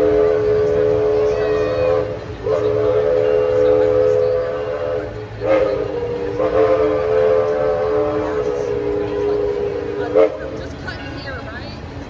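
Steam locomotive's chime whistle blowing a steady chord in long blasts: the tail of one long blast, another long one, a short one, then a final long one lasting about four seconds, the long-long-short-long grade-crossing signal. A sharp thump comes as the last blast ends.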